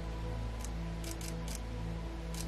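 Background music with long held notes, and over it four faint, short clicks of a Canon M6 Mark II camera shutter firing an exposure-bracketed series.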